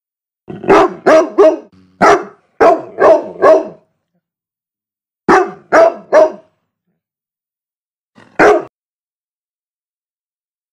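Large dog barking: a quick run of about seven barks, then three more a little past halfway, and a single bark near the end, with dead silence between the groups.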